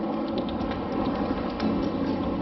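Steady wind and surf noise, with a few light clicks and rattles in the first second as a metal detector and its headphones are handled close by.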